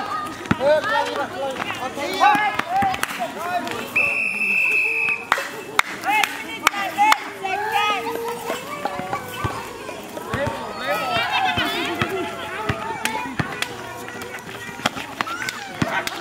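Many players and onlookers shouting and calling out over a pickup basketball game, with a basketball bouncing on concrete and sharp knocks scattered throughout. A steady whistle sounds about four seconds in and lasts about a second.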